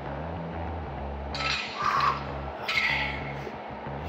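Background music with a steady low bass. About one and a half and three seconds in come two short clinks of the weight plates on a loaded EZ curl bar as it is picked up.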